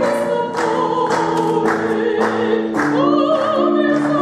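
Operatic singing by a woman with vibrato, over a keyboard instrument holding sustained notes beneath her; about three seconds in her voice moves up to a long held note.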